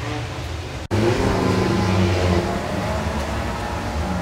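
BMW M3 E36 race car's engine idling with a steady note. The sound cuts out for an instant about a second in, then comes back slightly louder.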